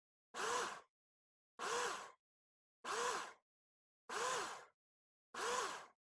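Countertop blender pulsed five times in short, even bursts, the motor's pitch rising and falling with each one, chopping chunks of sharp cheddar cheese into gratings.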